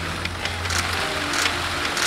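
Many press camera shutters clicking in irregular volleys over a steady low hum of the hall.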